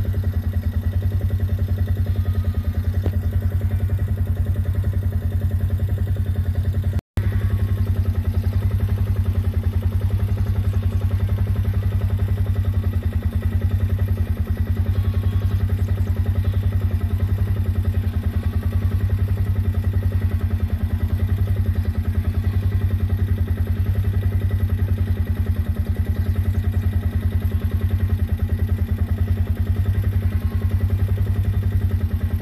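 A small vehicle's engine running steadily at a constant low speed. It cuts out for an instant about seven seconds in.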